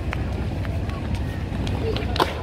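Light footsteps of a child running in sandals on stone paving, a few quick taps over a steady low rumble, with faint voices in the background.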